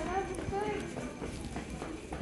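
A voice speaks briefly, not clearly, then footsteps tap on a hard shop floor in the busy murmur of a store.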